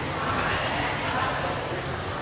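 Several young people's voices overlapping, talking and laughing.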